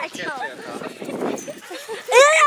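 Several people's voices laughing and calling out, with no clear words.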